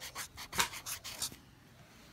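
Felt-tip marker scratching on paper in a run of quick writing strokes that stop about a second and a half in.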